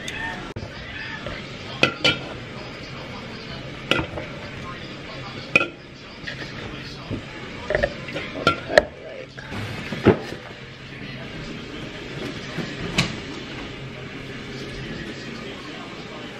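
Aluminium drink cans being taken out of a cardboard case and set down on a granite countertop: a series of sharp clinks and knocks at irregular intervals, about nine in all.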